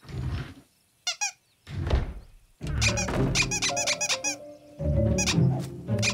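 Small cartoon donkey creatures squeaking in runs of short, high 'meep' chirps over background music, with a dull thud near the start and another about two seconds in.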